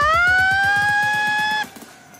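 A man's long, high falsetto yell, wavering at first, then sliding up in pitch and held steady before cutting off about a second and a half in.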